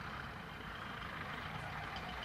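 Steady background hum of distant road traffic, even and without distinct events.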